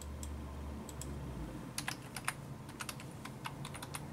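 Computer keyboard keys clicking as a Wi-Fi security key is typed: a couple of single clicks in the first second, then a quick run of about a dozen keystrokes from about halfway through.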